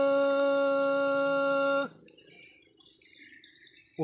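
A man singing unaccompanied, holding one long steady note that cuts off just under two seconds in, followed by quiet with faint background sounds.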